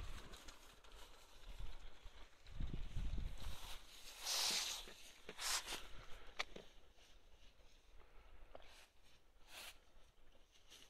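Dry fallen leaves rustling and crunching under footsteps and a sheep's hooves as the sheep comes up close. Irregular soft crunches and clicks, with a louder hissing rustle about halfway through.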